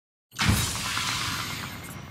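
Intro sound effect for an animated logo: a sudden low hit about a third of a second in, with a hissing swoosh that slowly fades.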